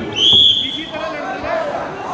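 A single short blast of a referee's whistle, a steady high note of about half a second just after the start. It signals the start of the wrestling bout.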